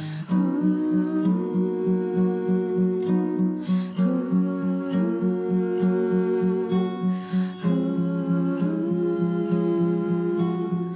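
Acoustic guitar picked in a steady pulse under two voices singing long wordless held notes that step from pitch to pitch, with a breath between phrases twice.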